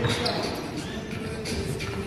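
Basketball bouncing on a gym floor during a game, with players' voices and music playing; a sharp knock right at the start is the loudest moment.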